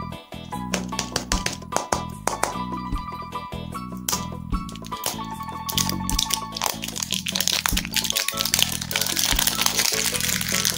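A plastic lollipop wrapper crinkling and crackling as it is peeled off by hand, densest in the last few seconds, over background music.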